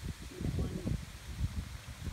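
Uneven low rumbling on the phone's microphone, like wind buffeting it, with a faint muffled voice about half a second in.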